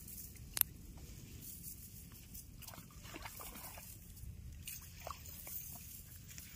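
Faint rustling and light scattered ticks from a cast net being handled and pulled open on grass, with one sharp click about half a second in.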